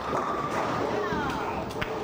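A ten-pin bowling ball hits the pins and they clatter down, with ringing pin noise, then voices in the hall and a few sharp claps near the end.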